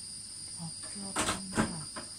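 A steady high-pitched whine made of two tones, with two sharp clicks in the second half, the second the loudest, and faint murmuring.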